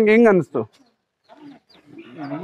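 A goat's long, drawn-out bleat that ends with a downward slide in pitch about half a second in, followed by a near-quiet pause with a few faint rustles.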